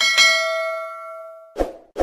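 A bell-ding sound effect for an animated notification-bell button, ringing with bright overtones and fading for about a second and a half before it cuts off. Two short pops follow near the end.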